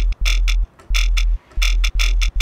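A Serum jump-up drum and bass bass patch playing repeated notes. A deep sine sub-oscillator note sits under a distorted, band-passed and phased upper tone that an LFO chops into rapid stuttering pulses, giving a croaking wobble. The notes come in short blocks with brief gaps between them.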